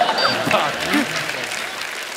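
Studio audience applauding and laughing after a punchline, with a few voices through it; the noise eases off gradually.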